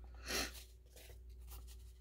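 A brief rustle about a third of a second in, then faint scratchy rubbing as a small ink pad is dabbed and dragged along the edge of a paper book page to ink it.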